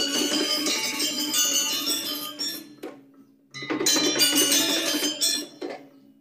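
Balinese gamelan music, with bright ringing metallophones, played from a small speaker and picked up by a budget wireless clip mic with its noise reduction set to level 2. The music breaks off briefly about three seconds in, comes back, and cuts off just before the end.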